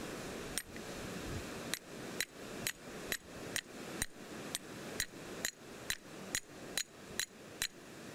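Small hammer striking a thick metal ring laid on a metal plate: one blow, a short pause, then a steady run of light blows about two a second, each with a short, bright metallic ring.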